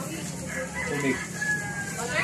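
A rooster crowing, faint, its call ending in a long held note.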